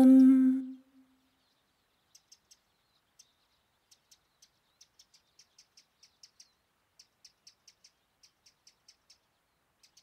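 A held, hummed note ends within the first second. It is followed by faint, high, short bird chirps repeating about two or three times a second.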